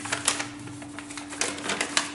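Sheets of paper rustling and crackling as they are handled, a string of crisp crackles, loudest about a quarter second in and again near the end, over a steady low hum.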